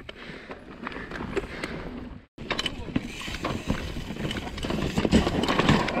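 Mountain bike riding fast down a dirt forest trail, heard from a camera on the bike or rider: tyre rumble, many clicks and knocks from the bike rattling over roots and bumps, and wind rumble on the microphone. The sound cuts out for a moment a little over two seconds in, then resumes and grows louder near the end.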